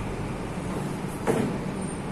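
Steady room hum, with a marker squeaking briefly on a whiteboard about a second and a quarter in.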